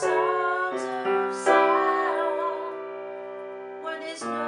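Unamplified acoustic upright piano playing sustained chords, struck fresh near the start and again about a second and a half in and left to ring, under a woman's sung vocal with vibrato.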